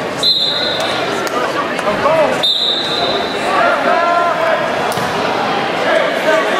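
Two short, shrill referee's whistle blasts about two seconds apart, over spectators and coaches shouting in an echoing gym.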